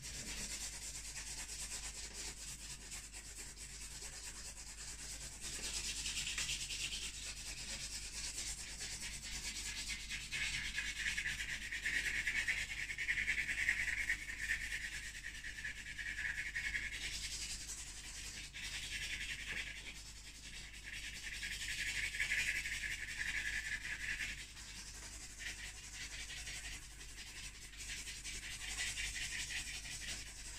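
Charcoal and pastel sticks scratching across a stretched canvas in rapid hatching strokes: a continuous dry, rasping scratch that swells louder and fades back several times.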